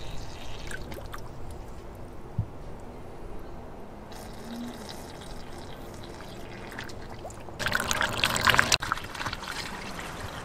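Distilled water pouring from a plastic gallon jug through a plastic funnel into a car's drained radiator, a steady trickle. It grows clearly louder for about a second near the end.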